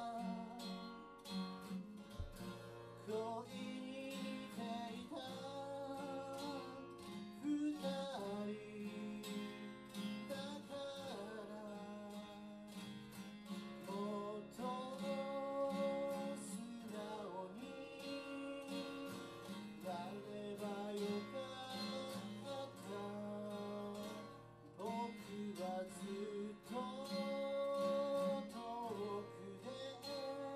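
A man singing a song while strumming an acoustic guitar, solo and live.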